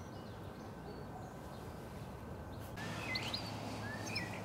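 Outdoor ambience: a low, steady background hiss with a few faint bird chirps, mostly in the second half.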